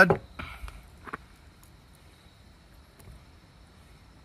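A man chewing a mouthful of steak, faint, with a few soft sounds and a small click in the first second. A faint steady high tone runs underneath.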